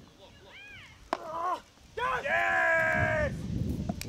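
Beach tennis rally ending: a paddle strikes the ball with a sharp crack about a second in, amid players' shouts, then a loud yell held for over a second as the point is won. A low rumble follows near the end.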